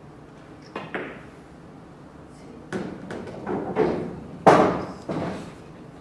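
Pool shot: the cue tip clicks against the cue ball and the cue ball clicks into an object ball about a second in. After that comes a run of heavier knocks as balls strike cushions and drop into a pocket, the loudest about four and a half seconds in.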